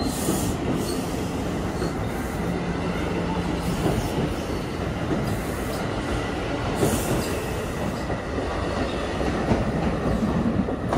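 An NJ Transit train of Multilevel double-deck coaches rolling past at speed, a steady rumble of steel wheels on the rails. The cab car at its tail end goes by near the end.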